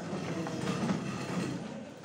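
Steady rumble of a passing train, even and continuous, with no sharp knocks.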